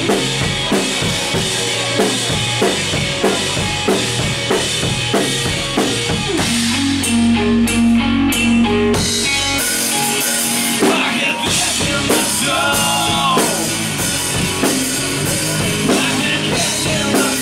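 Live punk rock band playing: the drum kit keeps a driving beat with electric guitar, and about six seconds in the band holds a low chord for a few seconds before the drums pick up again under bending high notes.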